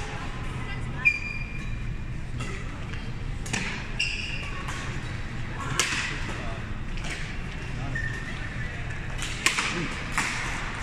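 Badminton rackets striking a shuttlecock in a doubles rally: a handful of sharp hits a second or more apart, with short squeaks from shoes on the court floor.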